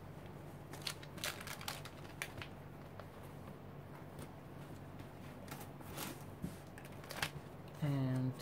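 Scattered faint rustles and light knocks of paper and cloth being handled: sheets of paper lifted and set down and a fabric towel spread out on a wooden tabletop.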